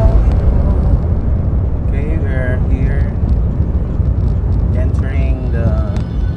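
A vehicle driving along a paved road: a steady, loud low rumble of engine and road noise. A few short snatches of voice come through about two seconds in and again near five seconds.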